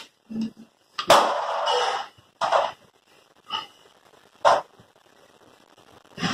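Handling noises from hands working with a plastic syringe and cloth: a sharp click about a second in, followed by about a second of rustling, then a few short scuffs.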